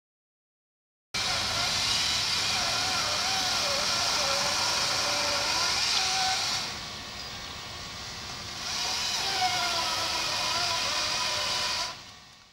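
A chainsaw running at speed with a steady whine whose pitch wavers. It starts suddenly about a second in, drops back for about two seconds past the middle, then picks up again.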